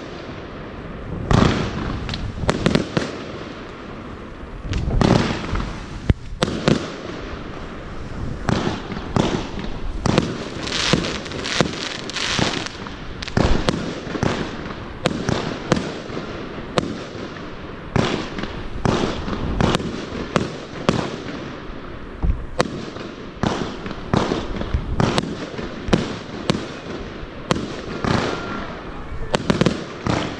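Wolff 'Cruel Traction' fireworks battery firing shot after shot: a long run of sharp bangs from launches and bursting shells, closely spaced and without a break, the loudest about a second and a half, five, eleven and thirteen seconds in.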